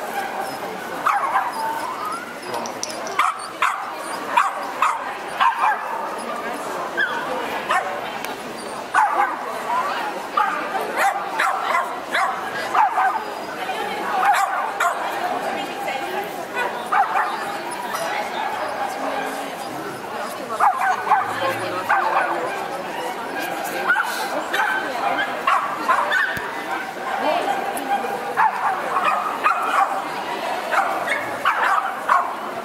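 Dogs yipping and barking again and again over a steady murmur of crowd voices.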